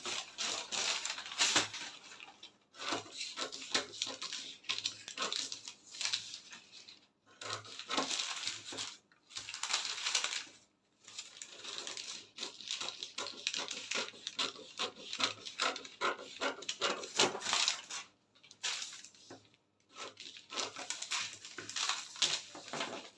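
Scissors cutting through brown pattern paper: runs of snipping and paper crackle a few seconds long, with short pauses between them.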